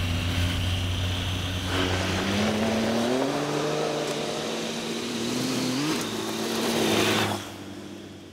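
Motorcycle engine running and revving, its pitch rising and falling several times with a quick rise near the end. It drops away about seven seconds in and fades out.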